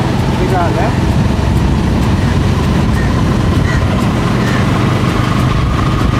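Motorcycle riding along a road: a steady engine hum under a heavy, uneven rumble of wind on the microphone, with a short laugh about a second in.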